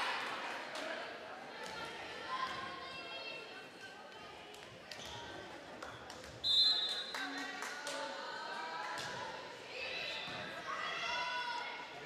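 Crowd voices echoing in a school gym between volleyball rallies, with scattered knocks of the ball and shoes on the hardwood floor. A short, high referee's whistle sounds about six and a half seconds in.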